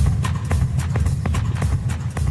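Routine music for a dog dance: a heavy bass line under sharp, regular percussion clicks, about four a second.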